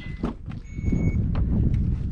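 Short, high, steady electronic beeps from a vehicle: one fading just after the start and a longer one about half a second in. Under them is a constant low rumble of wind on the microphone, with a few soft knocks as a car door is handled.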